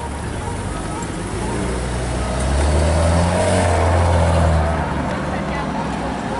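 Maserati Ghibli S Q4's twin-turbo V6 driving past at low speed, its low engine note swelling for a couple of seconds in the middle and then easing off, over street traffic.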